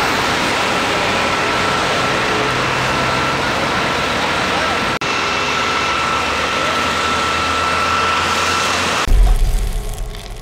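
Fire engines running, a loud steady noise with a faint steady whine through it. Near the end it cuts to a deep boom that fades away.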